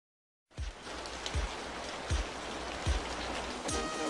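Steady hiss of rain falling, starting about half a second in, with a low thump recurring about every three-quarters of a second.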